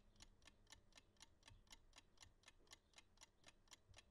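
Faint, even ticking of a clock, about four ticks a second.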